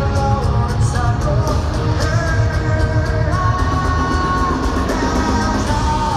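Live rock band playing loud: electric guitars, bass and drums under a sung lead vocal, with the singer holding one long note in the middle, heard from within the crowd.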